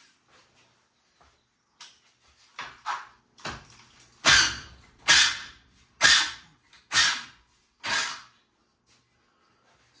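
Top rail of a metal railing panel clamped in a vise being yanked loose from the spindle clips that hold it. A few light knocks, then five loud, sharp knocks about a second apart as the rail is worked free.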